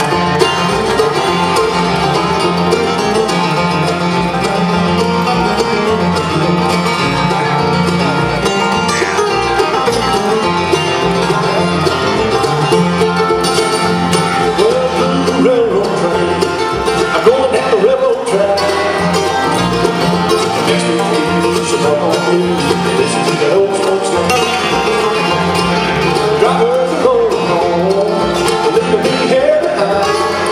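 Live bluegrass band playing: a flatpicked steel-string acoustic guitar, five-string banjo, upright bass and mandolin, continuously and without a break.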